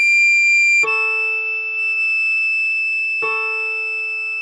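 Recorder melody playing a high D, then a long held high E, over a keyboard chord struck just under a second in and again about three seconds in.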